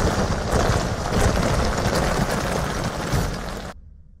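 Crashing, rumbling sound effect of a large stone mass breaking apart and collapsing, thick with crackle, fading out shortly before the end.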